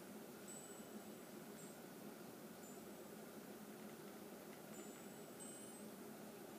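Near silence: faint room tone with a steady hiss and a few thin, faint high-pitched tones that come and go.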